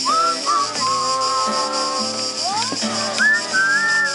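Acoustic guitar played with a melody whistled over it. The whistled notes are held and slide up into the next note.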